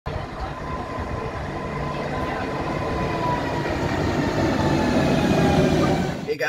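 Electric passenger train running alongside a station platform: a steady rumble that grows louder, with faint whining tones that drift slowly downward in pitch.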